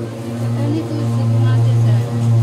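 A machine running outside with a steady, unbroken low drone that grows a little louder in the second second.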